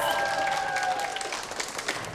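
A crowd of teenagers applauding, the clapping dying away over the two seconds.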